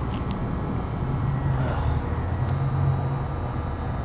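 Steady low background rumble, with a few faint clicks near the start. No elevator machinery is heard running.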